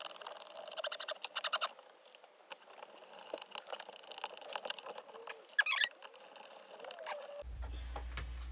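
Screws being driven into wood by hand with a screwdriver: rapid clicking and scratchy scraping that comes in bursts, with a short squeak about five and a half seconds in.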